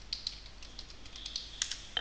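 Typing on a computer keyboard: a quick run of separate key clicks, with one louder click near the end.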